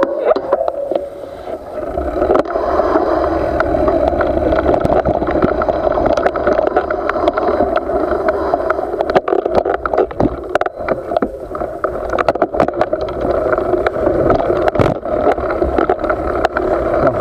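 Mountain bike riding over a dirt track: steady tyre and ride noise with a low rumble, broken by frequent sharp knocks and rattles from bumps in the trail.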